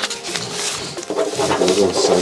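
A man speaking, with music in the background.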